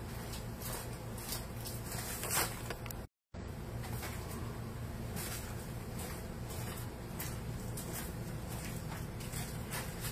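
Room tone with a steady low hum and a few faint knocks in the first seconds. A brief dead gap where the recording cuts about three seconds in.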